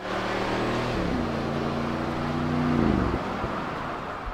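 Bentley Bentayga's four-litre twin-turbo V8 running as the car drives by; the engine note steps down in pitch about a second in and again near three seconds, then fades.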